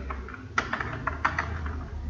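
Computer keyboard typing: about eight quick keystrokes at uneven spacing as a short line of text is typed.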